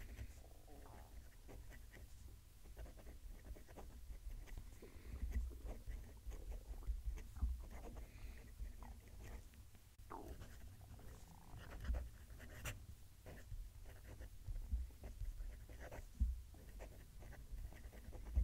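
Fountain pen writing on paper, faint and uneven scratching strokes of a Retro 51 Tornado's 1.1 stub JoWo nib forming a line of handwriting, with soft low bumps from the hand and notebook. The nib is stiff and very scratchy, with a lot of feedback.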